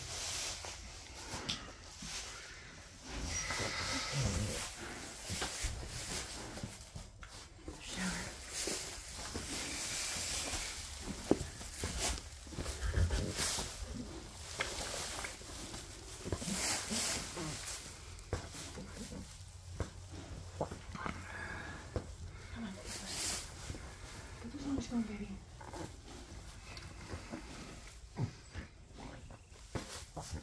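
Straw bedding and the wet birth sac rustling and crackling as a newborn foal is rubbed down by hand, with a few short, low animal sounds.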